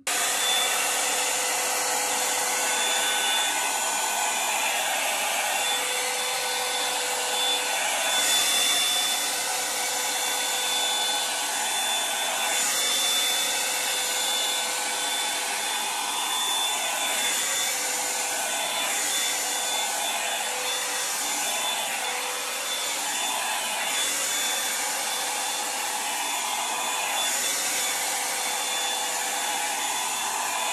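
Revlon One-Step Hair Dryer and Volumizer, a hot-air brush, running continuously: a rush of blown air with a steady motor whine. It swells and eases every few seconds as the brush is run through long hair.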